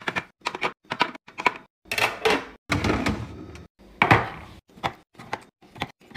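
Eggs, then small plastic drink bottles, being set down one after another into clear plastic fridge organisers: a quick, uneven run of sharp taps and clicks, with a couple of longer clattering scrapes in the middle.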